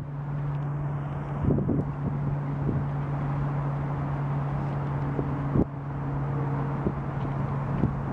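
Steady low mechanical hum under a haze of urban background noise, with a few small knocks.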